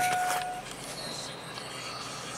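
A steady electronic beep tone from the Suburban's dashboard cuts off about half a second in, leaving faint, even cabin noise.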